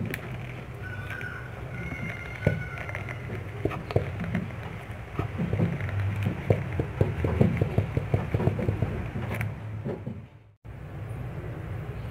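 Plastic glue bottle squeezed and handled over a plastic bowl, with a run of small clicks and crackles in the middle, over a steady low hum. The sound cuts out briefly near the end.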